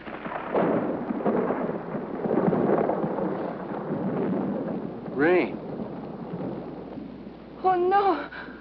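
Thunder rumbling for about four seconds, then rain falling more quietly.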